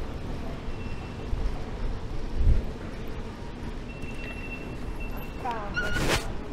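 Underground station concourse ambience with a low thump about halfway through and a thin high steady beep in the second half. Near the end come a few quick rising tones and a sharp clack as a ticket barrier is passed.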